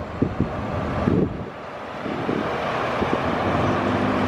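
Steady rushing traffic noise from the road, with a few faint knocks.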